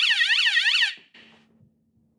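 Electronic siren-like alarm from the lie-detector prop, a tone wavering up and down about five times a second that cuts off about a second in. A faint steady hum follows.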